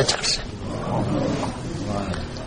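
A pause in a man's lecture: the end of a spoken word at the very start, then steady recording hiss and a low background rumble.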